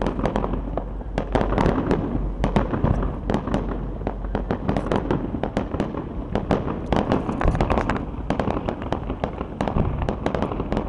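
Aerial fireworks going off in quick succession: a dense, unbroken run of bangs and crackling pops.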